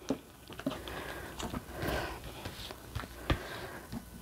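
Oracle cards being laid down one by one on a cloth-covered table: soft slides and light taps, with a sharper tap a little after three seconds in.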